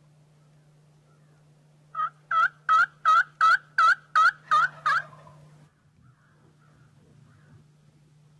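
A run of about nine loud turkey yelps, roughly three a second, beginning about two seconds in and stopping after about three seconds.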